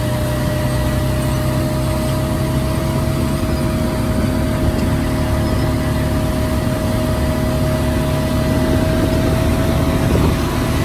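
Tractor diesel engine running steadily under load while pulling a wide row-crop planter through the field, with a low rumble and a steady high whine held throughout.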